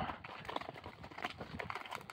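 Several horses' hooves clopping softly and unevenly as they are ridden along a road.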